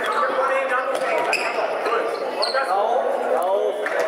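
A football being kicked and bouncing on a sports-hall floor during a youth indoor match, with several voices shouting at once, all echoing in the hall.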